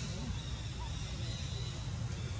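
Indistinct background voices over a steady low outdoor rumble, with no distinct sound events.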